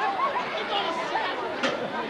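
Crowd chatter: several people talking over one another. There is a brief sharp sound about one and a half seconds in.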